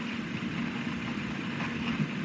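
Steady engine drone of an aircraft in flight, heard from inside the cabin.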